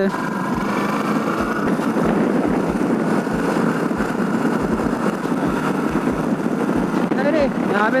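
Motorcycle engine running under way in city traffic, mixed with a steady rush of wind noise on the microphone.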